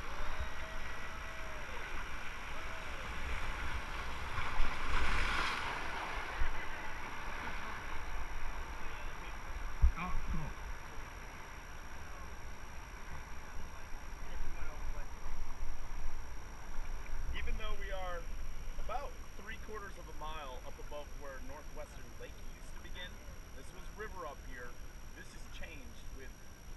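Rushing river water around an inflatable raft, with wind rumbling on the camera microphone and swelling louder for a couple of seconds about five seconds in. A few voices come in briefly past the middle.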